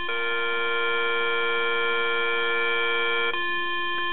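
Tempo Master metronome app's electronic drone on F with a just-intonation perfect fourth (B-flat) above, held as a steady chord. The upper note cuts off suddenly a little past three seconds in, while the F tone carries on.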